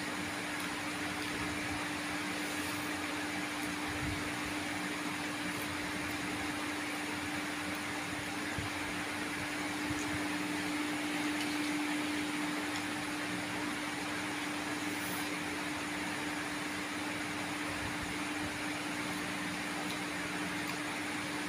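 A steady motor hum with an even hiss running under the whole stretch, with only a few faint clicks.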